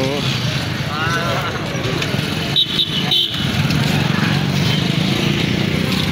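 Motorcycle engine running steadily while riding along a town road, with wind noise on the microphone and street traffic around. Two short high-pitched beeps sound about two and a half seconds in.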